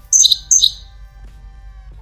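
iPhone notification sound as a Twitter notification arrives on the lock screen with the Fly jailbreak tweak: two short, high bird-like chirps within the first second. Faint steady background music runs under it.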